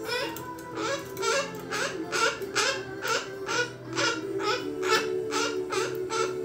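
White cockatoo giving a rapid, rhythmic run of short repeated calls, about three a second, with steady background music underneath.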